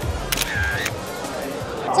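Smartphone camera shutter sound as a selfie is taken: a sharp click about a third of a second in, with a second click about half a second later. Background music plays underneath.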